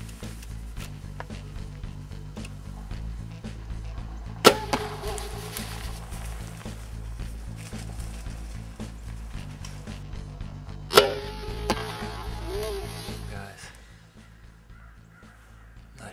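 Background music, with two sharp cracks from a compound bow being shot, each followed by a short ringing tone; the music stops near the end.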